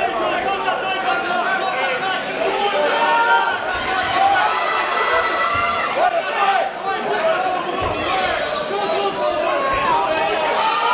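Ringside crowd at a mixed martial arts bout: many voices talking and calling out over one another, with no single voice standing clear.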